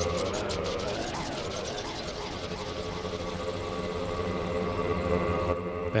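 Make Noise Eurorack modular synthesizer patch playing a steady drone. A fast high ticking pattern, about seven ticks a second, fades away over the first few seconds. Echoes swoop up and down in pitch as a knob on the Mimeophon delay is turned.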